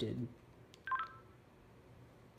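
A short click, then a brief electronic beep of a few stepped tones from a Motorola XPR handheld two-way radio, about a second in.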